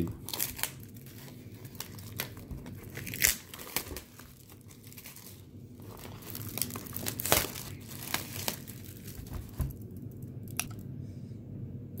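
Clear cellophane shrink wrap being torn and crumpled off a cardboard trading-card wax box: irregular crinkling with a few louder, sharper rips.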